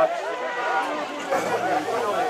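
Speech: a match commentator talking without a break.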